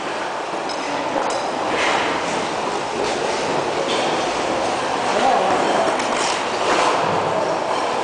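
Ice skate blades gliding and scraping on rink ice, a steady rolling noise broken by several sharper scrapes, with people's voices mixed in.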